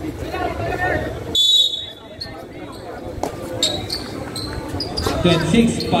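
A basketball bouncing on a hard outdoor court among players' voices. A short, shrill whistle blast, the loudest sound, comes about a second and a half in.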